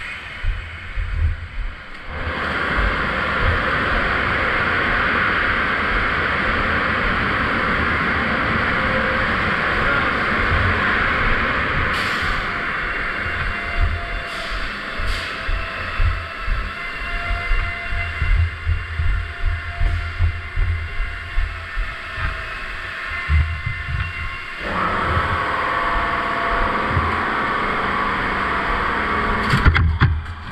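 Car wash machinery running in an equipment room of pumps, tanks and a compressor: a loud steady rushing noise that sets in a couple of seconds in, changing near the end to a different steady noise with a faint tone on top, with irregular low thumps throughout.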